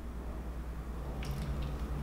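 Quiet room tone with a steady low hum and faint handling noise, with a brief soft rustle about a second and a half in, as a camera gimbal is turned onto its side in the hands.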